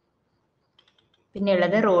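Quiet pause with a few faint, short clicks at a computer, then a woman starts speaking about two-thirds of the way in.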